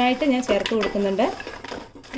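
Wooden spatula knocking and scraping against a metal pot while stirring fried banana pieces in thick jaggery syrup, with a few sharp clicks.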